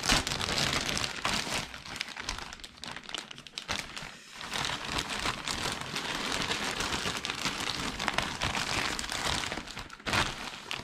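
Thin black plastic mailing bag crinkling and rustling continuously as hands open it and rummage inside, with a brief lull about four seconds in.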